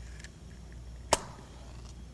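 Quiet room hum with one sharp click about a second in.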